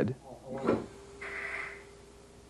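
Faint mechanical sound of an S-cam drum brake's shoes being spread by the cam: a short clunk about half a second in, then a soft hiss a little past the middle, over a low steady hum.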